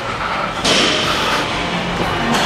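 A man straining through the final reps of a heavy set: a hard, forceful exhale lasting most of a second, then a short low strained groan near the end.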